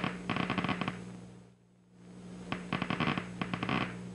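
Action potentials of a single complex cell in a cat's primary visual cortex, picked up by a microelectrode and played through a loudspeaker as rapid crackling clicks. They come in two bursts, one just after the start and a longer one from about two and a half seconds in, over a steady low hum. Each burst is the neuron firing as the bar of light falls within its receptive field.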